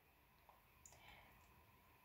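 Near silence, with a few faint ticks about half a second and a second in, from a mechanical pencil being brought onto the paper.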